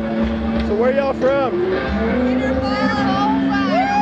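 Live rock music from a concert stage with a steady low drone. Over it, a voice slides up and down in pitch several times and holds one high note near the end.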